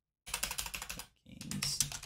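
Typing on a computer keyboard: a quick run of keystrokes with a short pause about halfway through.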